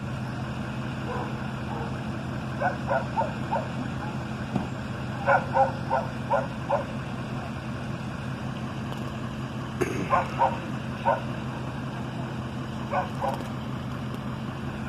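A dog barking in short runs of quick barks, four runs of about three to six barks each, over a steady low hum of an idling tow truck engine.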